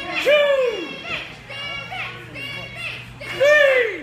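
Children in the crowd shouting, with two loud, high-pitched calls that rise and fall, one near the start and one about three and a half seconds in, and smaller shouts between them.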